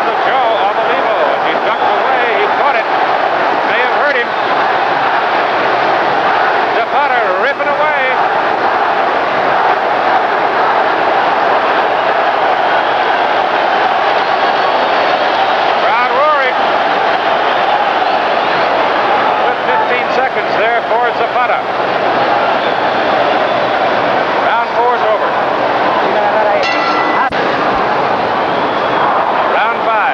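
Boxing arena crowd noise, a steady din of many voices shouting, with whistles rising and falling above it at several moments.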